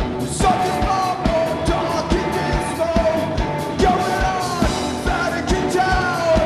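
Live rock band playing, with a singer's voice carrying the melody over a steady kick-drum beat and cymbals.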